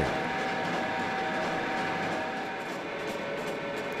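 Krone BiG Pack HDP II large square baler's driveline running: a steady mechanical whirr with faint, even whine tones, easing off slightly toward the end.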